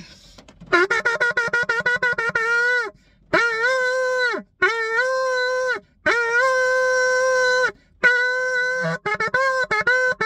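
Shofar blown in a series of blasts: a quick run of short staccato notes, then four long held notes of one to two seconds each, then short notes again near the end. Each long note scoops up in pitch as it starts, and it sounds inside a car.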